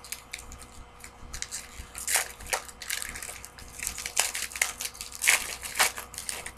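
Foil trading-card pack wrapper crinkling and cards being handled, in irregular scratchy crackles that bunch up about two seconds in and again toward the end.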